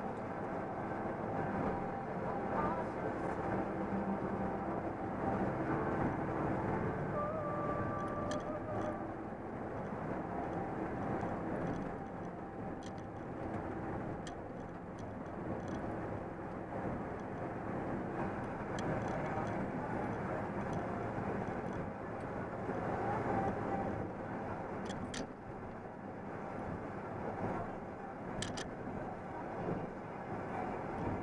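Steady engine and road noise heard inside the cab of a truck cruising at highway speed, with a few light clicks or rattles scattered through it.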